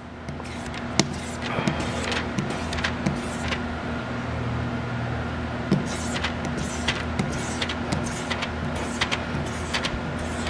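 Hand wiping and scraping the wet inside of a car's side-window glass, giving many short, irregular scrapes and taps, over a steady low mechanical hum.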